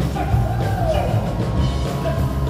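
Live rock band music with drums and electric guitars, loud and continuous, as heard from the audience in a theatre.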